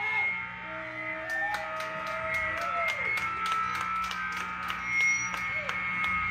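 Lull between songs on a live rock stage: guitar amplifiers hum and ring with faint held feedback tones, with light ticks about three to four times a second and some indistinct voices.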